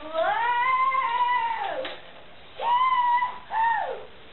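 High-pitched, drawn-out vocal calls: one long call that rises, holds and slides back down over nearly two seconds, then two shorter ones near the end.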